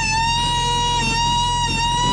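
A sapucai, the long high-pitched shout of Corrientes chamamé, held as one steady cry.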